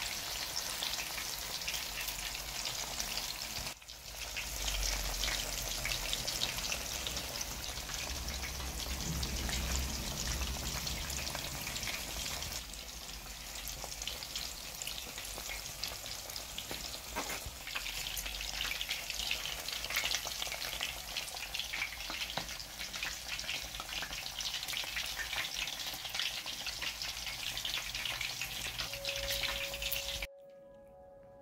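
Shrimp lollipops deep-frying in hot oil in a wok: a steady, dense crackle and sizzle of bubbling oil.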